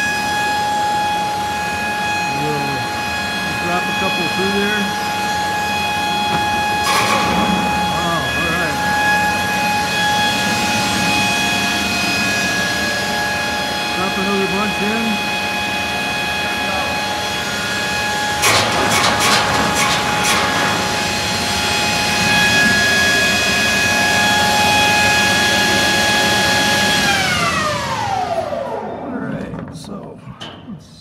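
Urschel Model E Translicer slicer running at speed, its cutting head and feed belts giving a steady whine, with bursts of clatter about 7 seconds in and again around 19–21 seconds as carrots are fed through and sliced into coins. Near the end the whine falls in pitch and fades as the machine is switched off and coasts to a stop.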